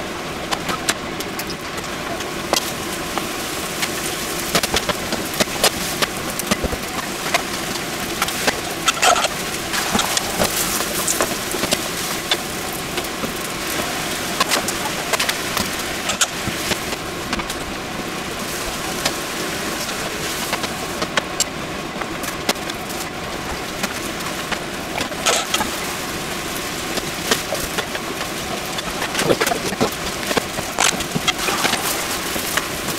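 Yakisoba noodles, pork and vegetables sizzling steadily as they are stir-fried in a metal pan, with frequent clicks and scrapes of a turner and chopsticks against the pan.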